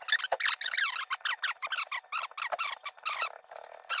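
Chef's knife chopping onion on a wooden cutting board: a quick, uneven run of crisp chops, about five a second.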